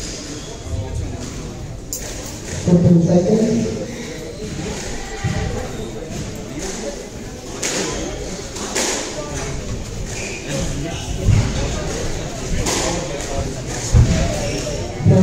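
Indistinct voices echoing in a large hall, with a few scattered thuds.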